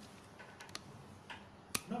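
A few faint, scattered clicks and ticks, with the sharpest one about three-quarters of the way through.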